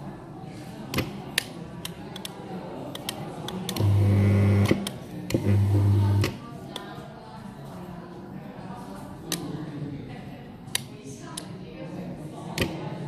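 AM55 tubular blind motor humming in two short jogs about a second long each, a little after a third of the way in, the motor's acknowledgement while the set button is held during limit programming. Rocker switches on the wired setting remote click repeatedly around them.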